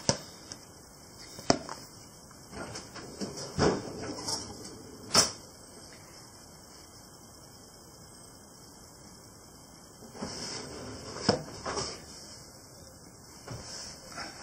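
A hand squeezing and working sticky, wet sourdough dough in a plastic mixing bowl at the first mixing stage: scattered squelches and light knocks against the bowl, with a quieter stretch of a few seconds in the middle.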